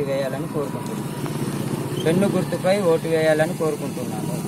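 A man speaking Telugu into reporters' microphones, over the steady low rumble of a vehicle engine running close by. The engine is heard most plainly in a pause in his speech about a second in.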